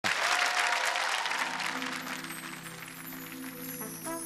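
Audience applause, strongest at first and dying away over the first two to three seconds, as a held chord opening the song's introduction comes in underneath.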